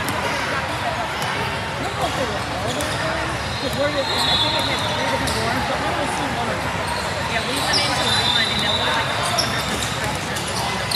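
Basketball game play: a ball bouncing on a hardwood court and sneakers squeaking briefly about four and eight seconds in, over steady chatter of spectators' voices.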